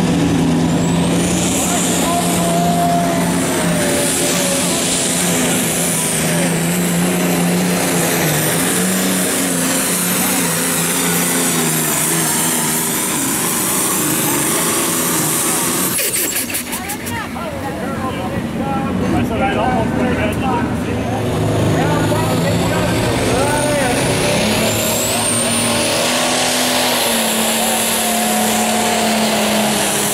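Turbocharged diesel engines of pulling tractors running hard under load as they drag a weight-transfer sled. The sound breaks off briefly about halfway through, then another tractor's engine comes in and rises in pitch near the end as it starts its pull.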